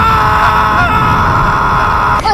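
A cartoon mouse character screaming in one long, held cry, at a steady pitch with slight wobbles. Its tail has been set alight, mistaken for a fuse. Under the scream runs a loud, noisy low rumble.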